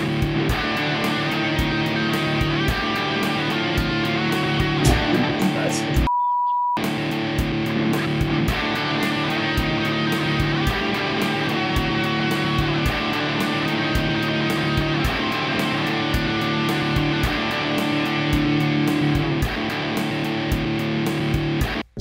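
Electric guitar played through a BOSS RC-500 loop station with its Repeat effect on, the notes copied and repeated over and over in a steady rhythm. About six seconds in the sound drops out briefly behind a short steady beep, and it cuts off suddenly near the end.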